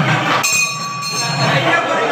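Festival procession music with crowd voices. About half a second in, a high held note with several overtones cuts through for under a second while the low drumming briefly drops out.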